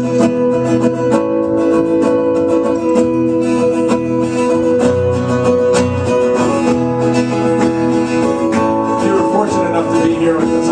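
Two acoustic guitars strumming chords together, the chord changing every couple of seconds.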